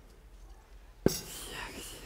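A short, sharp click about a second in, followed by a person's breathy, whispered vocal sound.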